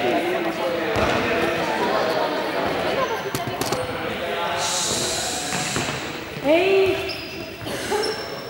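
A ball bouncing a few times on a sports-hall floor, amid voices chatting in the echoing hall.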